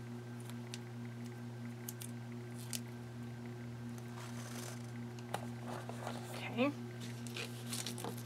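Small adhesive label-maker labels being peeled from their backing and pressed onto a binder's spine: scattered light clicks and soft rustles, a brief papery rustle about halfway through and a short rising squeak a little later, over a steady low hum.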